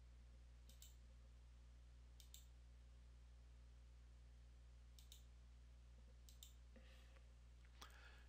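Faint computer mouse clicks, about five spaced a second or more apart, each a quick pair of ticks, over a low steady hum.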